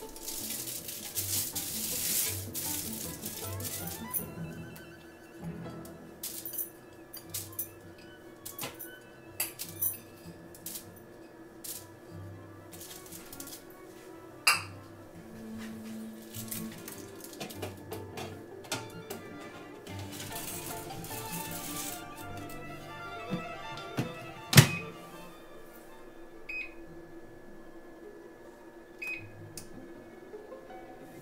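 Aluminium foil crinkles as a foil-lined tray is handled in a countertop air fryer oven, followed by small clicks and taps as chicken nuggets are laid on it, over background music. About 25 seconds in, the oven door shuts with a sharp clack, the loudest sound. Two short beeps from the touch control panel follow.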